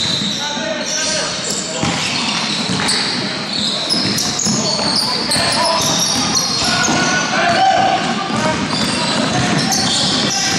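Basketball game on a hardwood gym floor: the ball bouncing, sneakers squeaking in short, high chirps, and players' voices calling out in the hall.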